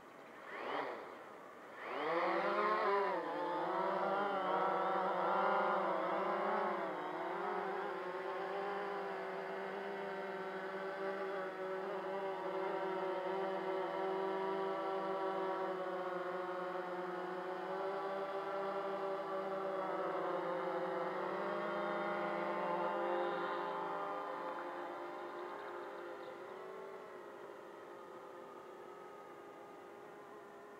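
Ideafly MARS 350 GPS quadcopter's motors and propellers spinning up: a short blip just under a second in, then a rising start about two seconds in as it lifts off. A steady propeller whine follows, wavering a little in pitch as it hovers and climbs, and fades over the last several seconds as the quad moves away.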